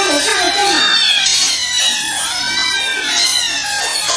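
Several kittens meowing over and over, high rising-and-falling calls as they beg to be fed, over background music.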